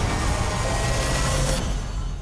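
A loud trailer sound-design rumble, a noisy hit with a deep low end and faint held tones, that eases off near the end and begins to fade.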